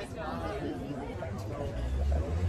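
Indistinct chatter of many people talking at once around patio tables, with a low rumble coming in near the end.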